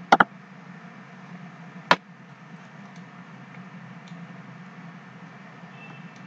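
Two quick computer mouse clicks, then another single click about two seconds in, over a steady low hum and faint hiss of background noise.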